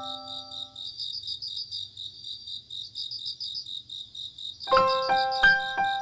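Crickets chirping in a fast, even pulsing trill, a night-time ambience effect. The last notes of a chime fade out at the start, and a light piano-like keyboard tune begins about three-quarters of the way through.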